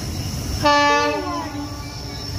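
Horn of a WAG-9 electric locomotive, one blast of just under a second starting a little over half a second in, over a low steady rumble.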